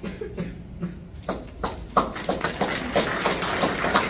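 Scattered audience clapping that starts about a second in and builds into a steady patter of many quick claps.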